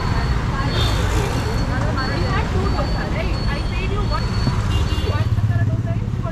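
Steady street traffic, with a constant rumble of engines from passing motorbikes and other vehicles, and voices talking in the background.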